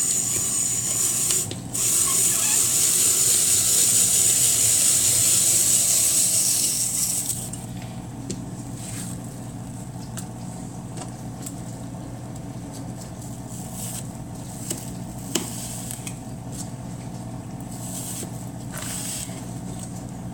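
Hand-cranked apple peeler-corer turning a green apple through its blades: a steady, loud scraping hiss as the peel is cut away and the apple is cored and sliced, with a short break just under two seconds in. It stops about seven seconds in, and a few soft clicks and knocks follow as the peeled apple is handled.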